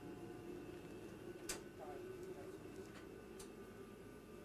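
Steady hum of the space station's cabin ventilation fans and equipment, with a few faint steady tones over it. A single sharp click comes about one and a half seconds in.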